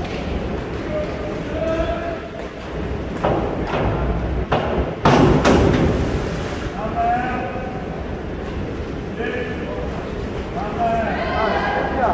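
Indoor swimming pool during a race: swimmers splashing, with a loud burst of water noise about five seconds in, and voices calling out in the echoing hall.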